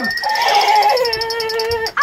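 A child's high-pitched, drawn-out whining cry, held for well over a second and sliding slightly down in pitch, from a scared child. A faint steady high pulsing tone runs behind it.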